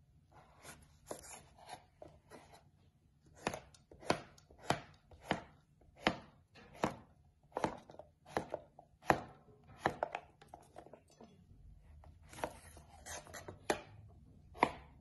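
Knife cutting through zucchini and knocking on a wooden cutting board, one slice at a time. The strokes are faint at first, then come steadily about every 0.7 s, and there is a quicker run of cuts near the end.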